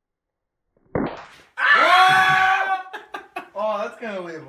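After a second of silence, a single thump, then a man's loud drawn-out yell that rises and holds for about a second, followed by shorter voice sounds.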